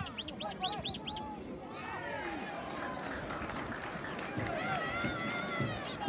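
Voices calling out across a football pitch during play. In the first second a bird gives a quick run of repeated high calls.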